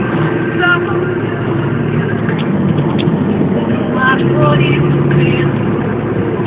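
Steady engine and road noise of a Toyota car on the move, heard from inside the cabin.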